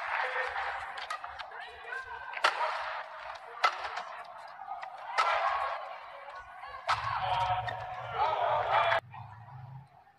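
Badminton rally: sharp cracks of rackets hitting the shuttlecock about every one to two seconds over steady arena crowd noise, which drops away suddenly near the end.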